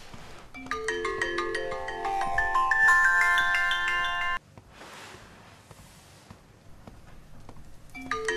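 Mobile phone ringtone, a bright marimba-like melody of quick notes. It starts about a second in, cuts off suddenly after about three and a half seconds, and starts ringing again at the very end.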